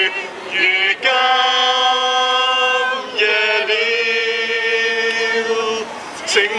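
A man singing a slow song into a handheld microphone, without words clear enough to transcribe. A short note about half a second in is followed by two long held notes of two to three seconds each.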